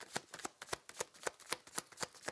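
A deck of oracle cards shuffled by hand: a quick, even run of soft card slaps, about four or five a second.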